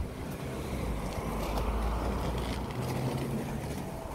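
Wind buffeting a phone's microphone outdoors: a steady low rumble and rushing noise with no clear events.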